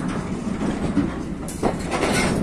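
Freight train of railway tank cars rolling past, the wheels rumbling and clattering over the rail joints, with a couple of sharp knocks near the end.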